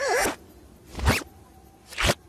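Cartoon sound effects: a brief gliding squeak at the start, then two quick zipping swooshes, one about a second in and one near the end.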